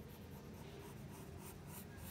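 Pencil scratching on sketchbook paper in a series of short, quick strokes, faint.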